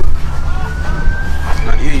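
A siren wailing, one slow tone that rises steadily and then starts to fall near the end, over a steady low rumble.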